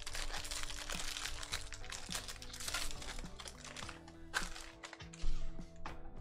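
Foil wrapper of a Bowman Draft baseball card pack crinkling as it is torn open and peeled off, over background music with held notes. The crinkling is dense for the first few seconds, then gives way to a few light clicks as the cards are handled.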